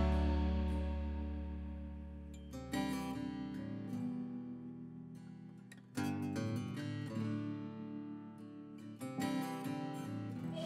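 Background music: acoustic guitar chords strummed about every three seconds, each left to ring and fade before the next.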